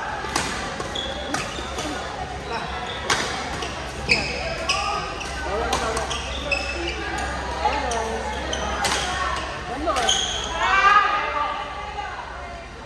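Badminton rackets striking a shuttlecock in an irregular series of sharp clicks, with short squeaks of court shoes on the wooden floor, echoing in a large sports hall. Voices of players and spectators carry through, rising to a call about ten seconds in.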